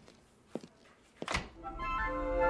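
Footsteps: three evenly spaced thuds about two-thirds of a second apart. Orchestral bridge music swells in during the last half second, marking a scene change.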